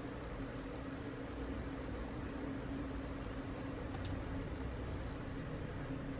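Steady low electrical or fan hum with faint hiss: room tone. There is one faint click about four seconds in.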